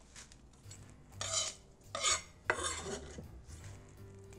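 Chopped pea shoot greens being scraped and gathered off a wooden cutting board, in three short rustling scrapes a little over a second in, at about two seconds, and at about two and a half seconds.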